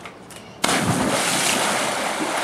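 A person jumping into a swimming pool: a sudden big splash a little over half a second in as the body hits the water, followed by the continuing rush and churn of the disturbed water.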